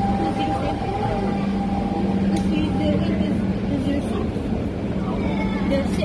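MRT train pulling in alongside the platform and slowing, a steady rumble of wheels on rail with a low hum, and a higher steady whine that fades out about halfway through.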